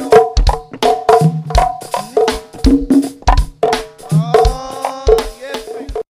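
Go-go percussion groove: congas struck in short pitched tones over low drum thuds and cymbal ticks, in a steady syncopated pocket beat.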